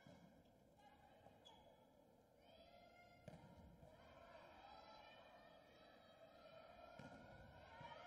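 Faint volleyball rally in an arena: the ball is struck on the serve at the start, then sharp hits about three seconds in and twice near the end, under faint voices.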